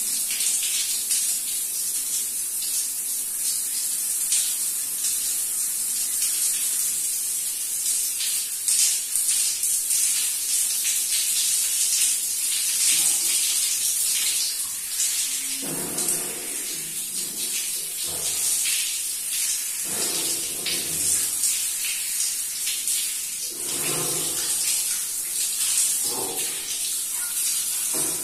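Shower running: water spraying steadily from a wall-mounted shower head and splashing over a person's head and hair, with a few louder bursts of splashing and rubbing in the second half.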